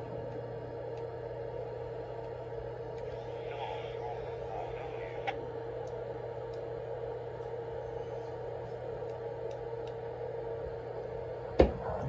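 Steady electrical hum from ham radio station equipment, with a constant mid-pitched tone over a low drone. A faint click comes near the middle and a sharp, loud click about a second before the end.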